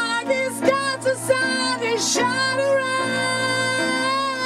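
High, operatic-style singing voice over sustained electronic keyboard chords, breaking into short sung phrases and then holding one long note from about two seconds in.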